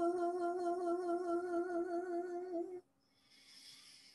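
A woman humming one long held note with a slight waver, as meditative vocal toning; the note stops a little before three seconds in, followed by a soft breathy hiss.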